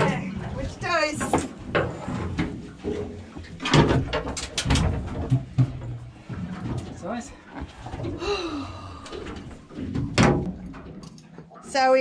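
A few sharp knocks and thuds on an aluminium boat as a freshly caught Spanish mackerel is hauled aboard, with voices talking between them.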